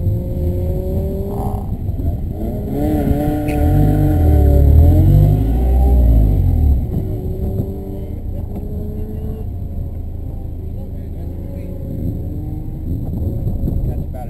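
Car engine running at idle; about two and a half seconds in, the revs climb and are held for a few seconds, then drop back to idle around seven seconds in.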